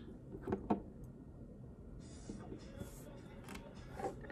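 Mostly quiet room tone with a couple of faint, short taps in the first second.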